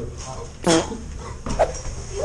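A person's voice: two short, high yelp-like vocal sounds about a second apart, the first louder.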